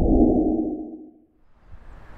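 Low, muffled whoosh sound effect for a logo intro, swelling and then fading out about a second in. Faint background noise follows near the end.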